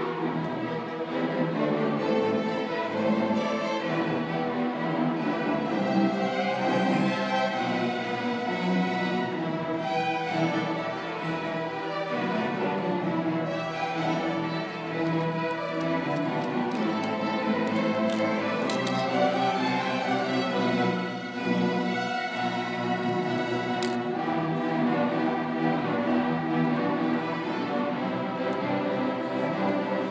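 An orchestra playing live, with the violins and cellos carrying the music at a steady level.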